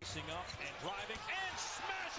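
Televised NBA game audio starting abruptly as playback resumes: arena crowd noise with a basketball bouncing on the hardwood court.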